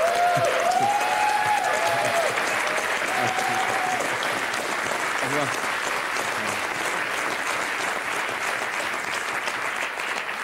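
Studio audience applauding steadily, with a few voices calling out over the clapping in the first few seconds.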